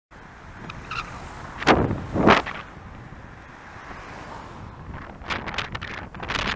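Wind buffeting the microphone of a moving road camera, a steady rumble with two loud gusts about two seconds in and more gusts near the end.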